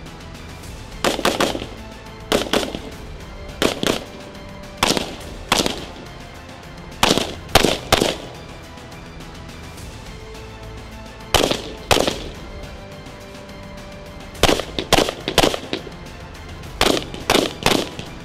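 Gunshots: about twenty sharp cracks, single or in quick runs of two to four, every second or two, over steady background music.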